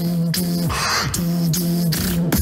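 Vocal beatboxing into a handheld microphone: a hummed bass note held in short repeated pulses, cut by clicks, with a hissing burst about a second in.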